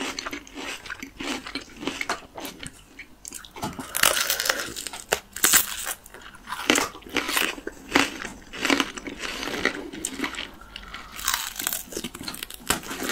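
Crisp unripe green plums being bitten and chewed by two people close to the microphone: repeated sharp crunches with chewing between them, heaviest from about four to six seconds in.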